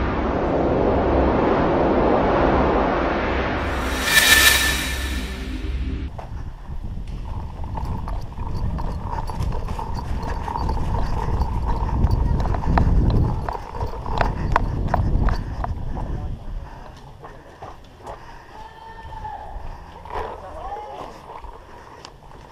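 A swelling rush of noise over a low drone, peaking in a loud whoosh about four seconds in and cutting off at about six seconds. Then outdoor sound from a camera worn by a player: many scattered sharp clicks and knocks with low thuds, and faint voices.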